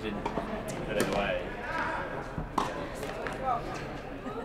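Tennis racket striking the ball on a spin serve about a second in, followed by another sharp hit around two and a half seconds, with faint voices in the background.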